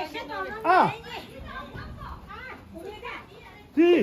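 Several people's voices talking and calling out, with some high-pitched voices; a loud falling call just before a second in and another loud call near the end.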